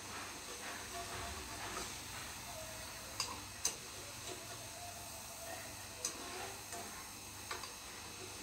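Chegodilu rings frying in hot oil in a kadai, a steady sizzle, with four sharp clicks of the wire spider strainer knocking against the pan as the rings are stirred and scooped.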